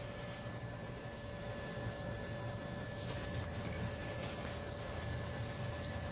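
Steady low background hum with a faint, constant high whine, and a brief hiss about three seconds in.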